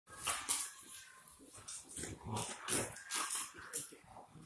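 Rottweiler and pit bull play-fighting on a hardwood floor: dog sounds and scuffling in short, irregular bursts.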